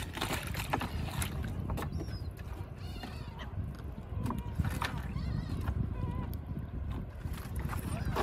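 Gulls and other seabirds giving short, repeated calls, many overlapping, over a steady low rumble.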